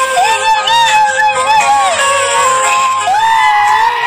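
A young boy's high, wavering wailing cry mixed with background music that has a repeating bass line, ending in one long drawn-out wail.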